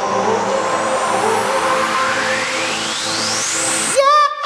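Electronic dance music in its build-up: a swelling rush of noise with a sweep rising steadily in pitch through the second half, leading into the drop.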